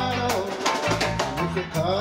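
Live reggae band playing: drum kit, bass guitar, electric guitars and keyboard in a steady groove with a beat of about four strokes a second.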